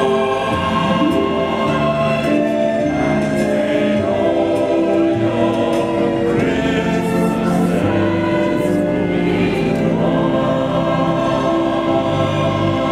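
A mixed choir of men's and women's voices singing together in harmony, holding sustained chords that change every second or so.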